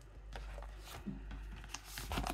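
Vinyl LP's inner sleeve and gatefold jacket being handled as the record is slid out: a few faint rustles and light scrapes.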